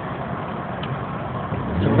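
Steady vehicle and traffic noise heard from inside a car cabin.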